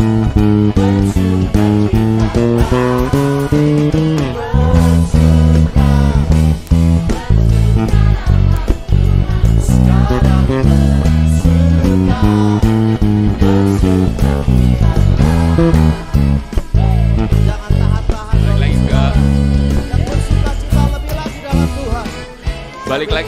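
Pedulla MVP5 five-string electric bass playing the chorus bass line of a worship song, the notes stepping up and down in a steady run, over the band's live recording with singing.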